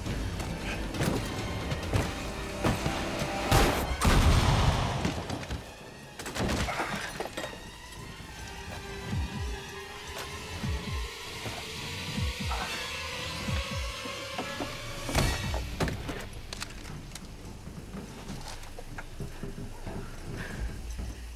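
Action-film soundtrack: a music score with a loud crash and shattering glass about four seconds in, followed by a held tense note and another sharp bang about fifteen seconds in.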